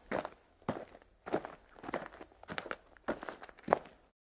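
Footsteps of a person walking at an even pace, about seven steps, roughly one every 0.6 seconds.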